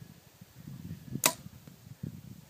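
PSE Dream Season Decree compound bow shot: the string released from full draw with one sharp snap about a second in.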